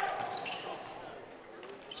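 A basketball being dribbled on a hardwood gym floor, faint and fading, among the low background noise of the gymnasium.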